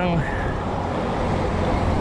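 Steady rushing of wind on the microphone and road traffic noise, heard from a moving bicycle.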